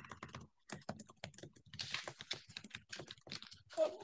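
Typing on a laptop keyboard: a quick, irregular run of faint key clicks.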